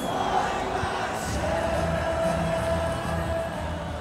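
Street carnival crowd with music played over a sound system: a pulsing bass beat under the noise of the crowd, with one long held note in the middle.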